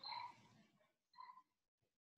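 Near silence broken by a couple of faint, short animal calls, each holding a clear pitch for a fraction of a second.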